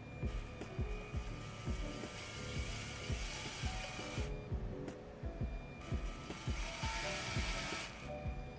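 LEGO Mindstorms Robot Inventor motor whirring through its gears, its speed set by the color sensor's reflected-light reading off a card held over it. It stops about four seconds in, starts again a second and a half later, and stops at the end. Background music plays underneath.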